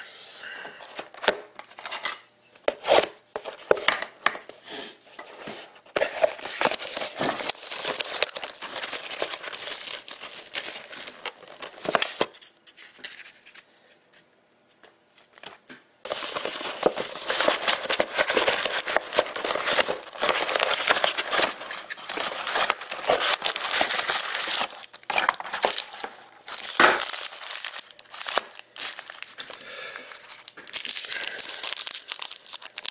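Crinkling and tearing of packaging as a Panini Certified hockey card box is opened and its foil card packs are handled, with a quiet spell of a few seconds about halfway through.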